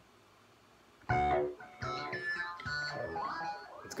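Kairatune software synthesizer playing a preset: a quick run of short pitched synth notes with sharp starts that die away, beginning about a second in.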